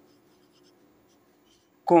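Faint scratching of a felt-tip pen writing on paper, over a low steady hum. A man's voice starts near the end.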